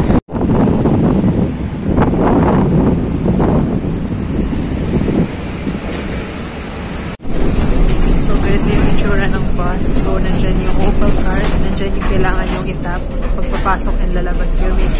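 Outdoor street noise with wind buffeting the microphone. After a cut about seven seconds in, the inside of a city bus: a steady low engine rumble with people's voices over it.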